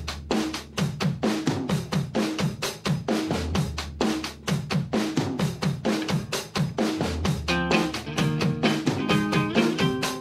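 Background music with a fast drum-kit beat over a sliding bass line; a melodic part comes in about seven and a half seconds in.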